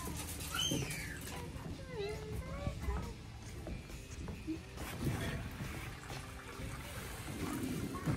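Boiled-down maple sap pouring from a stainless steel stockpot into a wet T-shirt filter, a steady splashing trickle of liquid, with faint voices now and then.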